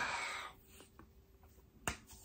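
A breathy trail-off in the first half second, then near quiet, and a single sharp finger snap near the end, made while trying to recall a name.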